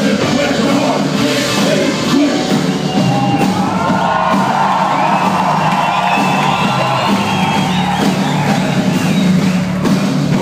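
A large live band playing a rock-leaning song, drums and keyboards in a dense, steady mix. The audience cheers and whoops over the music.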